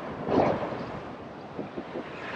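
Strong wind rushing over the microphone, with surf washing behind it; the wind swells briefly about half a second in.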